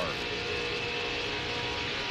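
Onboard sound of an IROC Pontiac Firebird race car's V8 engine running steadily at racing speed, about 164 mph.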